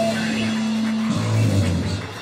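Rock band's electric guitar and bass holding long sustained notes, changing to a lower note about a second in.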